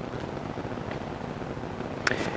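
Steady low rushing background noise outdoors, with no distinct events.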